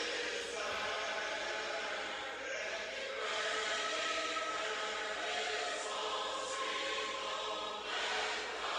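A choir of mixed voices singing a hymn unaccompanied, in harmony, with long held notes.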